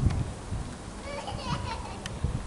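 A small child's high voice calling out briefly, about a second in.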